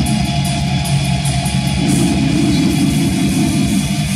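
Live metal band playing loud, with distorted electric guitar over fast, dense drumming.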